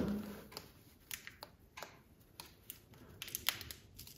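Masking tape being pressed and worked with the fingers into the narrow gap around a window hinge: faint, irregular little crinkles and clicks, one a bit louder near the end.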